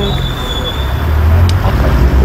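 Low rumble of a road vehicle passing on the street, swelling about a third of the way in.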